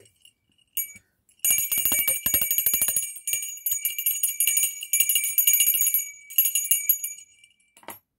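A bell rung by hand: one short ring about a second in, then rapid continuous ringing with several high metallic tones for about six seconds, which stops shortly before the end.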